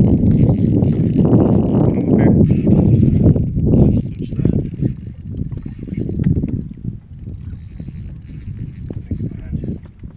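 Fishing reel being cranked while a hooked fish is played, a dense mechanical rattle with low rumble, loudest for about the first four seconds and then fading.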